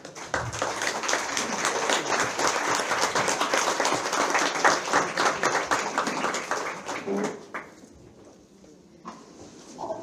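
Audience applauding for about seven seconds, then dying away.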